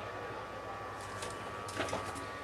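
Steady low background hum and hiss of room tone with faint high-pitched tones, and one faint click near the end.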